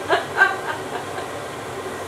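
A fan running with a steady whoosh of moving air, after a couple of short vocal sounds in the first half second.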